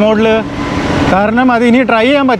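A person talking while riding, broken in the middle by about half a second of rushing noise: wind and road noise of the moving electric scooter.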